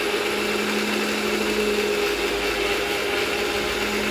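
Electric mixer grinder with a steel jar running steadily, churning collected milk cream toward butter for ghee. It makes an even motor hum throughout.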